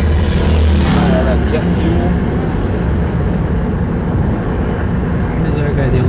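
Road noise of cars driving at freeway speed, heard from a moving vehicle: a steady low rumble of engines and tyres, heaviest in the first second or so.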